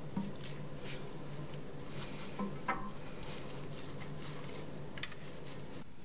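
A wet sponge being pressed and squeezed in a drained toilet tank, giving irregular squelching and crackling as water dribbles out of it.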